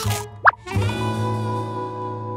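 A short, quick upward-sliding pop sound effect about half a second in, followed by background music with held notes.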